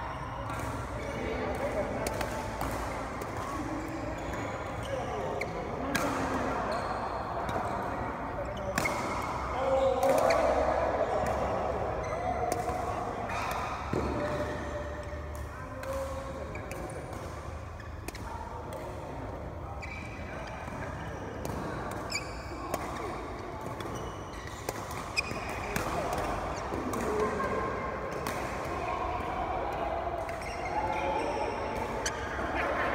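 Badminton rackets striking shuttlecocks in short, sharp smacks at irregular intervals, mixed with people talking.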